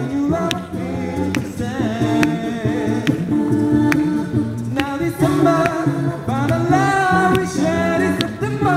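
Mixed male and female a cappella group singing held chords in close harmony through microphones, over a vocal-percussion beat of sharp clicks about once a second.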